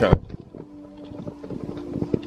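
Handling noise from a handheld camera being carried: a sharp knock right at the start, then rustling and light clicks over a faint steady tone.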